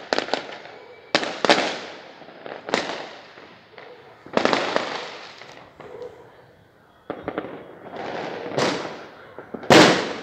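Aerial fireworks exploding: about seven sudden booms, each rolling away in a fading echo, with the loudest one near the end.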